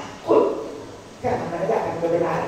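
A woman's voice speaking into a microphone: two short phrases with a pause between them.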